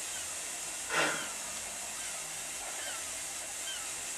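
Vale of Rheidol narrow-gauge 2-6-2 tank steam locomotive No. 8 standing with steam hissing steadily. One short clank about a second in.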